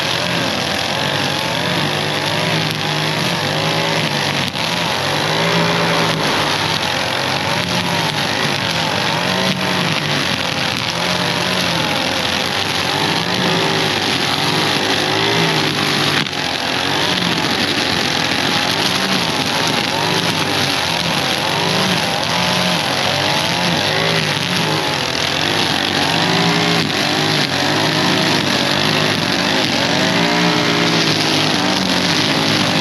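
Gas string trimmer running loud and close, its engine pitch rising and falling again and again as the throttle is worked while cutting through tall, overgrown grass.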